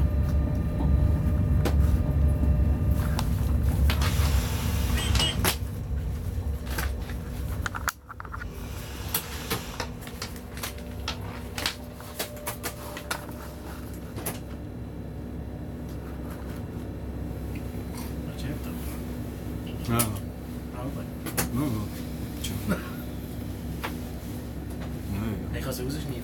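Cab noise of an ÖBB class 1016 electric locomotive under way: a loud low rumble for about the first eight seconds, then a sudden drop to a quieter steady hum with scattered clicks and knocks.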